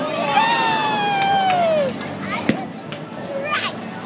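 A child's long, wordless cheering shout of about a second and a half, gliding down in pitch, over bowling-alley crowd hubbub. A single sharp knock comes about two and a half seconds in.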